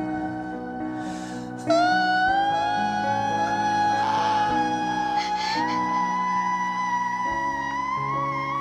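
A male singer holds one long, high note that slides and climbs in small steps, over changing piano chords. The note comes in louder about a second and a half in.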